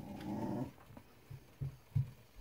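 A German Shepherd's short, low growl lasting under a second, followed by a couple of soft thumps.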